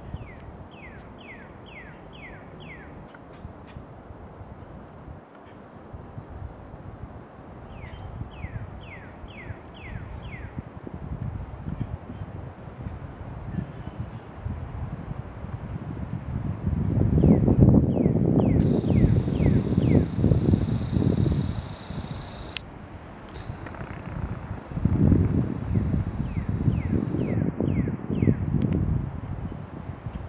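A songbird repeating a phrase of about six quick down-slurred whistles, four times. In the second half a loud low rumbling noise on the microphone rises and falls under it.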